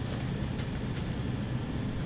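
Room tone in a lecture room: a steady low hum, with a couple of faint clicks in the first second.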